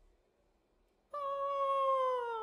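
A pause of near silence, then about a second in a female classical singer enters on a long held note without vibrato, sliding slightly lower near the end.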